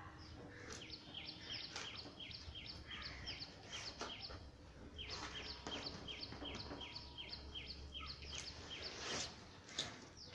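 A bird calling in long runs of short, high, descending chirps, about three or four a second, with a short break about four seconds in. Scattered knocks and rustles of a cardboard shipping box being handled and opened.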